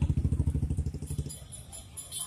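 A motorcycle engine running close by, a fast, even exhaust beat that is loud at first and fades away over about a second and a half.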